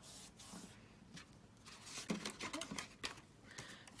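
Cardstock rustling and scraping under the fingers as a glued seam on a folded paper bag is rubbed together and the bag is handled, in short irregular strokes. A few faint, brief voice sounds about halfway through.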